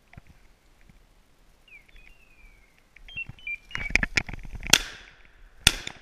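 Two shotgun shots about a second apart near the end; the first is the louder, with a fading echo. Before them come a few thin high whistle-like notes and a short burst of rustling and crackling.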